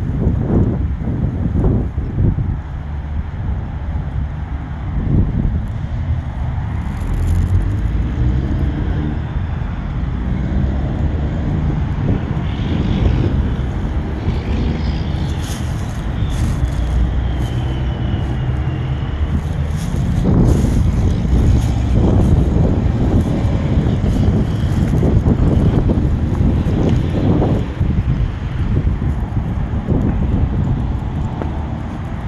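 Wind buffeting the microphone: a rumbling, gusty roar that swells and eases, louder in the last third.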